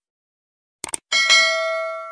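Subscribe-animation sound effect: a couple of quick mouse clicks about a second in, then a bright notification-bell ding that rings on, slowly fading.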